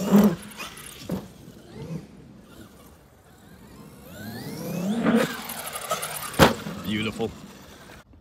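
Electric drivetrain of a Traxxas XRT RC truck on sand paddle tyres whining, its pitch rising and falling with the throttle, with a sharp knock about six and a half seconds in.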